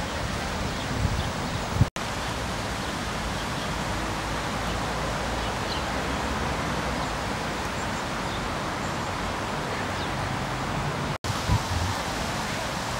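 Steady outdoor background noise, an even rush with no single clear source, broken by two very short dropouts about two seconds in and near the end. A few low thumps sit around the dropouts.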